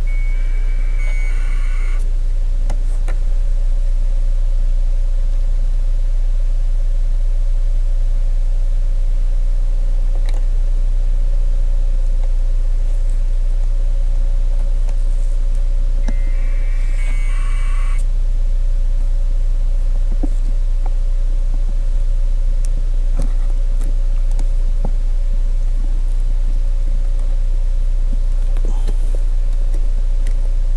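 Action cameras giving electronic power-on beeps: a short run of high tones about a second in, and again about halfway through, each lasting about a second. Under them a steady low hum with a faint steady whine.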